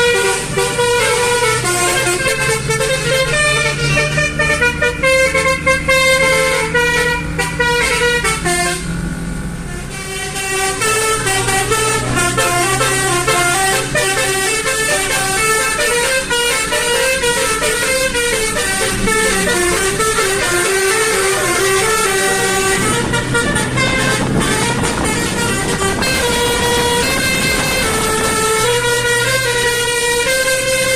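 Basuri multi-tone air horn played keyboard-style like a pianika, sounding a fast melody of stepping horn notes, with a brief pause about nine seconds in.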